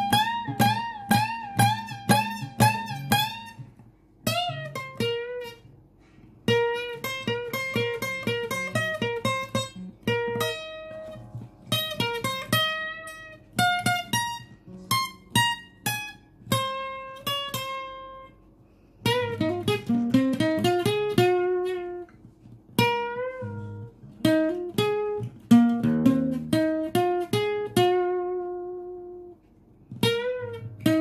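Yamaha APX 500 II acoustic guitar playing single-note lead phrases, with string bends and vibrato on held notes. The phrases are broken by short pauses.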